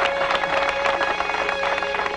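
Crowd applause, a dense patter of many hands clapping, over a film score holding steady tones.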